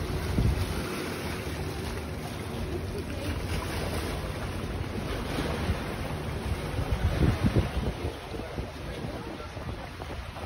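Sea water washing over rocks at the foot of a seawall, with wind buffeting the microphone in gusts, strongest about half a second in and again around seven to eight seconds in.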